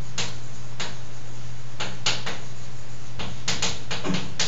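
Chalk writing on a blackboard: short, irregularly spaced taps and scratches of the chalk as words are written, over a steady low hum.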